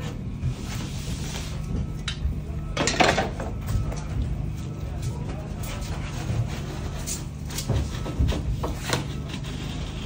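Utility knife scoring the paper face of a drywall sheet along a drywall T-square: several short scraping strokes, the loudest about three seconds in, over a steady low hum.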